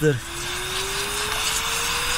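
Handheld electric air duster blowing air onto a robot vacuum's pleated dust-bin filter: a steady rush of air with a motor whine rising slowly in pitch.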